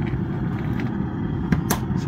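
Steel skimmer scraping dross off the surface of molten metal in a crucible, with two sharp knocks near the end, over a steady low rumble.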